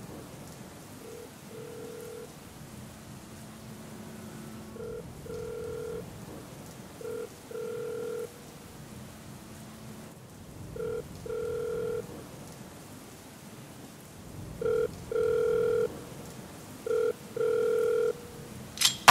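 A telephone ringing tone, sounding in pairs of a short beep and a longer one every few seconds and growing louder, over a steady hiss.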